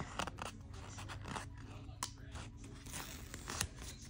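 Paper rustling with light scattered crackles and clicks as a printable sticker sheet is handled and a thin washi sticker strip is peeled from its backing.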